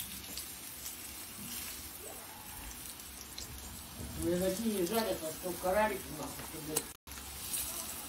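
Syrniki frying in oil in a pan, with a steady sizzle and occasional light clicks of a fork against the pan as the pancakes are turned.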